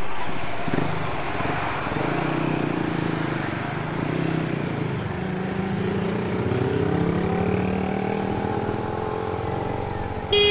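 Motorcycle engine running under way, heard from the rider's position with wind and road noise. Its note climbs gradually in the second half as the bike picks up speed.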